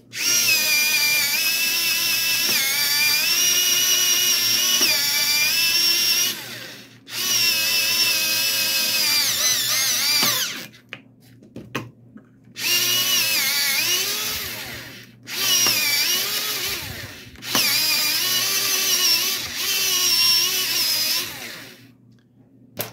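ZMSJ USB-powered electric pencil sharpener running in about five bursts of a few seconds each as a pencil is pushed in and sharpened, its motor whine wavering and dipping in pitch under the load of cutting.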